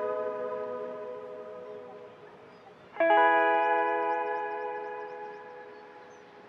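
Background music: a guitar chord rings out with echo and fades, then a second chord is struck about three seconds in and dies away.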